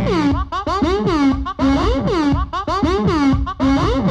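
Electronic synthesizer music from small Mochika synth modules: a looping sequenced pattern of short notes with swooping pitch glides that dip and rise again, over a held middle note and low bass hits.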